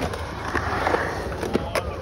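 Skateboard wheels rolling on smooth concrete, a steady low rumble, with a few short sharp clicks from the board.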